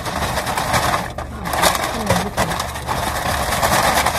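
Honda car idling, heard from inside the cabin: a steady low engine hum under a loud, fan-like hiss that drops out briefly a little after one second, with light rustling.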